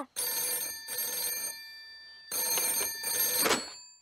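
Old-fashioned rotary-dial telephone bell ringing twice, each ring about a second and a half long with a short pause between.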